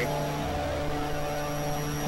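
Steady electronic synthesizer drone: a low held tone with several fainter held tones above it and a thin high whine, unchanging throughout.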